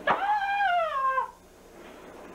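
A man lets out a long, high howling cry that slides steadily down in pitch and breaks off after just over a second.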